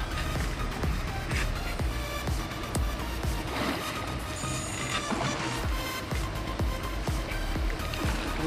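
Background electronic dance music with a steady beat.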